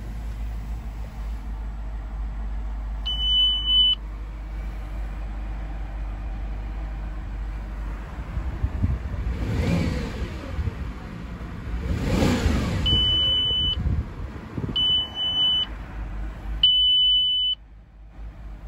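A car's instrument-cluster warning chime sounds four times, each a steady high beep about a second long, the first about three seconds in and three more close together near the end. The cluster is showing a low-coolant warning. Underneath, the engine idles with a steady low rumble, and there is some rustling from handling in the middle.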